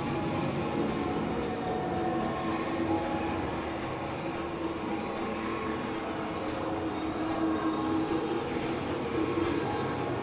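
Experimental synthesizer drone-noise music: a dense, steady, train-like rumble of noise with sustained tones wavering through the middle and faint ticking in the treble.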